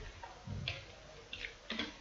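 Faint computer keyboard typing: a few light keystrokes spread over the two seconds as a short word is typed.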